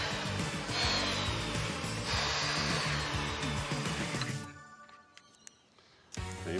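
Compound mitre saw cutting through strips of hardwood timber, three cuts in quick succession, each one opening with a faint falling whine, over background music. The sound dies away about four and a half seconds in.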